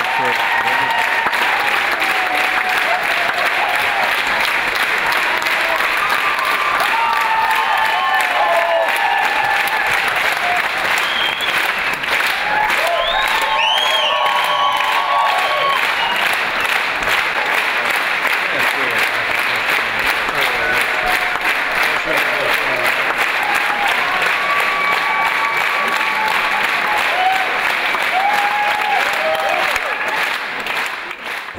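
A large theatre audience applauding steadily throughout, with voices calling out and cheering over the clapping.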